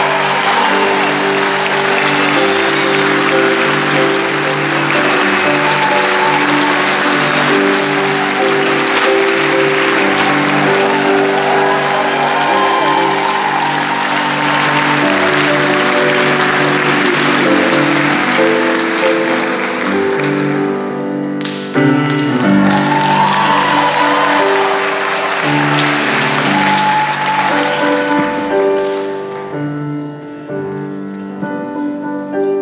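Steinway grand piano playing a slow intro under audience applause; the applause dies away about twenty seconds in, leaving the piano alone.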